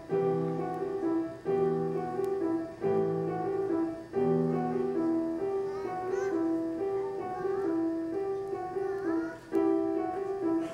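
Piano playing a gentle repeating broken-chord figure, with low bass notes that change about every second and a half during the first half.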